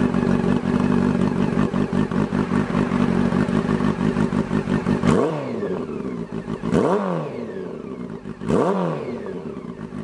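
A Honda CB400 Super Four's inline-four engine running through an aftermarket muffler with its baffle removed. It is held at steady raised revs for about five seconds, then drops, and the throttle is blipped three times, each a quick rise and fall in pitch.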